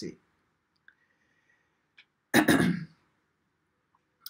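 A woman coughs once, briefly, about two and a half seconds in, after a quiet pause.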